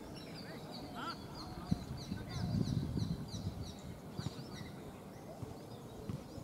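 A bird calling over and over in a quick run of short, high chirps, about three a second, which stops near the end. Beneath it is a low rumble that swells in the middle.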